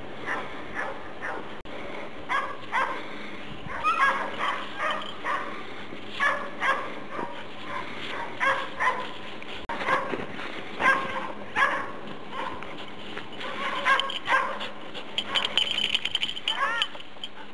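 Belgian Shepherd Tervuren rescue dog barking and yipping in quick repeated runs as it digs into a snow mound, with a whine near the end. This is the excited barking of an avalanche search dog that has found the buried person and is digging toward them.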